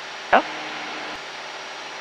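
Steady hiss of cabin noise in a Cessna 172 in level flight, with one brief vocal sound about a third of a second in.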